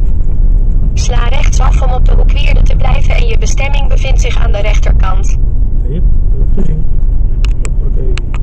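Car driving slowly, heard from a dashcam inside the car as a loud, steady low rumble. A person's voice talks over it from about a second in for some four seconds, and a few light clicks come near the end.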